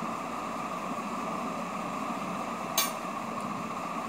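Steady background hum, like a room fan or air conditioner, with a single sharp click a little under three seconds in.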